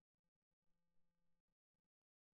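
Near silence, with a faint, brief low hum in the middle.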